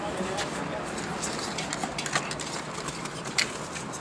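Scattered light knocks and clicks as plastic crates and a cardboard box are set into a car trunk, over faint background voices; the sharpest click comes about three and a half seconds in.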